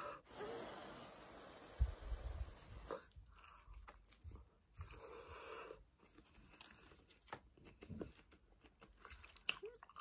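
A person breathing out over a hot mouthful of pizza, then chewing it with soft, scattered crunches of the crust, close to the microphone.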